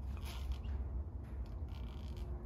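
Low, steady room hum with a few faint rustles; no distinct event stands out.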